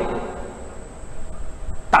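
A pause in a man's speech, filled by low steady room hum. The tail of his voice dies away at the start, there is a faint click near the end, and he starts speaking again just before the end.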